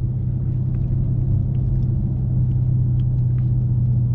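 Inside the cabin, the 2018 Dodge Charger Scat Pack's 6.4-litre Hemi V8 running with a steady low drone and road rumble while cruising at low speed.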